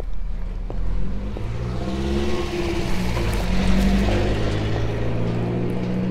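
A car's engine running nearby, its low hum shifting slightly in pitch, with engine and tyre noise swelling toward the middle and easing off again, as of a car passing slowly.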